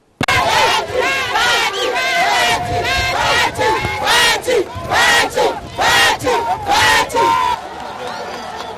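A crowd cheering and shouting excitedly, many high voices crying out together in rising-and-falling calls. It starts abruptly and drops away shortly before the end.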